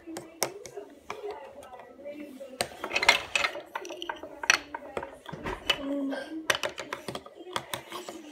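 Plastic toy figures and Duplo bricks knocking and clattering against a wooden tabletop, a scattered series of sharp clicks and taps.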